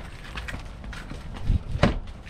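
Footsteps walking on asphalt, faint and uneven, then two sharper knocks near the end, about a third of a second apart.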